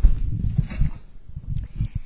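Handheld microphone handling noise: low, irregular thumps and rumbling as the microphone is passed from hand to hand, with the sharpest thump right at the start.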